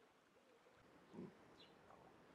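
Quiet outdoor background with one short, low animal call about a second in, and a few faint high bird chirps after it.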